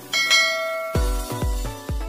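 Bell-like notification chime from a subscribe-button animation, ringing out just after the start, followed about a second in by electronic music with deep bass drum hits that sweep downward, about three a second.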